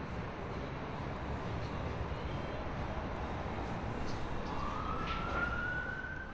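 Street background noise with a steady low traffic rumble. A siren starts about two-thirds of the way through, its wail rising in pitch.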